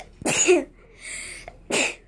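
A girl sneezing twice, the first sneeze about a quarter second in and the second near the end, with a sharp intake of breath between them.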